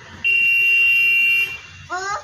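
A loud, steady, high-pitched electronic beep lasting a little over a second, followed near the end by a short rising vocal sound from a small child.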